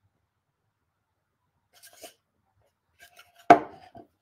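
A few light handling taps, then one sharp knock about three and a half seconds in as a small wooden crate is set down on a cutting mat.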